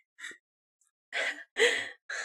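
A person sighing: two breathy exhalations in the second half, after a faint breath near the start.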